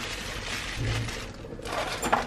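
Quiet kitchen handling noise: soft scraping and rustling while seasoning is worked into raw shrimp in a plastic tub. A brief low hum comes about a second in.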